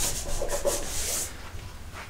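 A hand rubbing across an adhesive wall decal, smoothing it back down onto the window after it has been peeled off to be reapplied; a dry rubbing sound that fades out about a second in.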